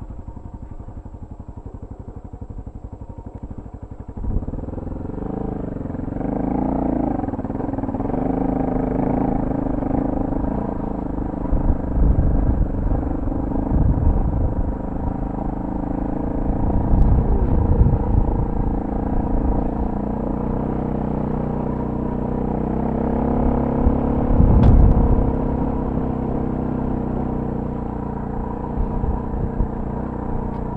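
Adventure motorcycle engine idling, then revving up about four seconds in as the bike pulls away, its pitch rising and falling with the throttle as it rides a rough dirt track, with several short low thumps.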